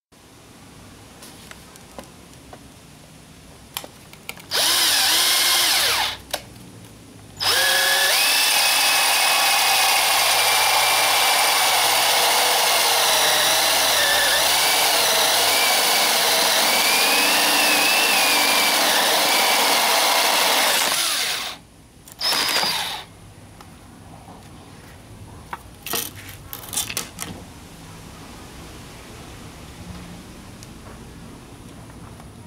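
Cordless drill-driver boring into a wooden board with a 25 mm spade bit: a short run about four seconds in, then a long run of about fourteen seconds whose motor whine dips and wavers as the bit bites, and one more brief run just after. A few light knocks follow near the end.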